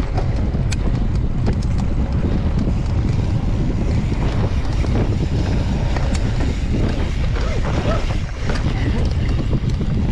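Mountain bike rolling fast down a dirt trail: steady wind buffeting on the microphone over the rumble of knobby tyres on dirt, with scattered sharp clicks and rattles from the bike over roots and stones.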